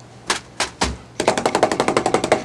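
A wet two-inch paint brush being beaten against a stand at the foot of the easel to knock out the paint thinner after washing. Three separate knocks, then about a second in a fast rattling run of about a dozen strikes a second.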